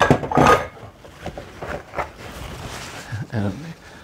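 A glass mixing bowl is set down on a kitchen countertop: a short clatter of knocks in the first half-second, then quieter handling noises.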